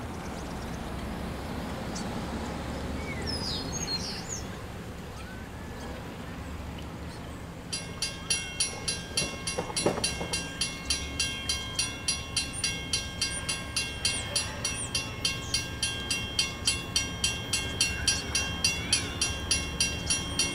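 Railroad grade-crossing bell starting to ring about eight seconds in, evenly at about three strokes a second, the warning of an approaching train. Before it starts there is a low steady rumble and a few bird chirps.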